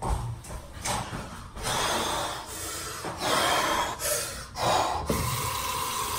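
A man breathing hard in short, noisy gasps and snorts through the pain of a freshly scalded hand. A steady hiss starts about five seconds in.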